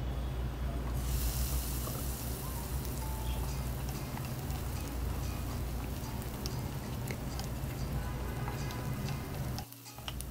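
Chopped red onion, garlic and chili sizzling in oil in a pot, the frying hiss louder from about a second in, with a wooden spoon scraping and tapping against the pot as it stirs. The sound cuts off suddenly just before the end.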